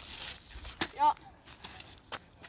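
A narrator's voice saying one short word, "ja", about a second in. Before it come a breathy in-breath and a sharp click.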